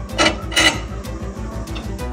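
Two short metal scrapes as the air-vent slider on a fireplace insert is pushed, over background music with a steady beat.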